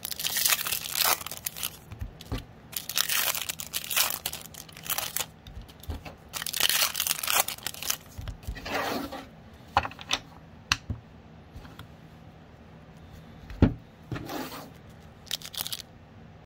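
Foil Topps trading-card pack wrappers crinkling and tearing as packs are opened, in repeated bursts through the first eight or nine seconds. Then come scattered light clicks of cards and wrappers being handled, with one sharper knock a little before the end.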